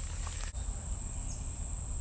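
Steady high-pitched drone of insects in summer woods, with a low rumble underneath.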